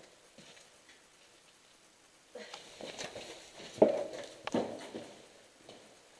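A couple of seconds of near quiet, then a run of irregular knocks and scuffs, like footsteps and gear handling on a debris-strewn floor, with one sharp knock about four seconds in louder than the rest.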